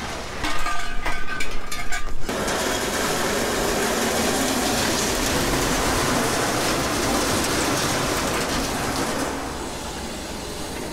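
Clanking of scrap steel, then a steady, continuous rattling clatter of loose scrap metal for several seconds, dying down near the end.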